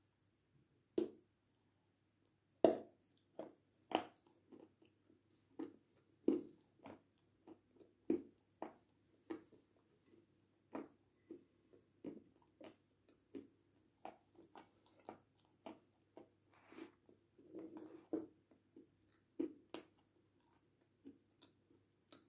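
Dried edible clay being bitten and chewed: a long run of short, crisp crunches, irregular and about one or two a second, the sharpest bites in the first few seconds and smaller, quicker crunches as it is chewed down.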